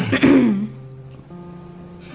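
A man clears his throat once, briefly and loudly, with soft background music of long held notes after it.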